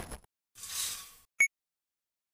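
Logo sting sound effects on a glitchy end-card animation: a short airy whoosh, then one sharp electronic blip about a second and a half in.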